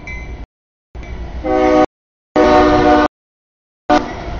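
CSX freight locomotive's air horn sounding two blasts for a grade crossing, the second longer and louder. The train's rumble follows as it reaches the crossing near the end. The sound cuts out abruptly to dead silence several times between segments.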